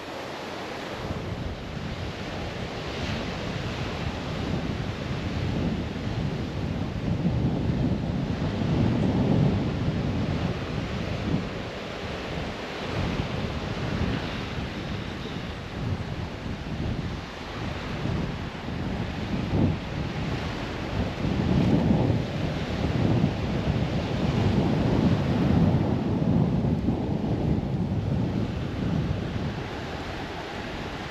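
Wind buffeting the microphone over surf breaking on a sandy beach, the rumble swelling and easing in gusts.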